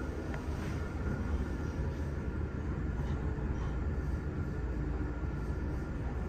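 ThyssenKrupp scenic traction elevator cab travelling in its hoistway, heard from inside the cab as a steady low rumble with a few faint steady tones above it.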